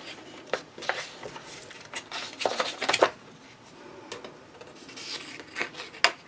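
Thick paper pages of a coloring book being turned and smoothed flat by hand: dry rustles and brushes of paper, a cluster of louder ones about halfway through.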